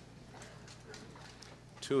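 A pause in a man's amplified speech: the faint room tone of a large hall, with a few faint scattered clicks, before the voice comes back near the end.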